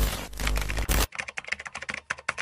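Keyboard typing sound effect: a dense flurry of key clicks over the fading tail of a music hit, which ends about a second in, followed by a run of separate key clicks, several a second.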